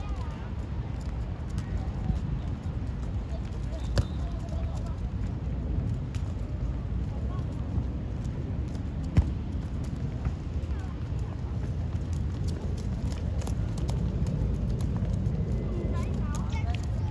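Youth football being played: faint voices of players and spectators over a steady low rumble, with two sharp thuds of a football being kicked, about four and nine seconds in.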